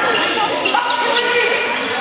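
Sound of a basketball game in a gym: players and spectators calling out over one another, echoing in the hall, with a basketball bouncing on the hardwood court.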